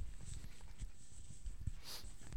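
Faint low thuds and rustling as a man sits down close to the microphone, with a brief hiss near the end.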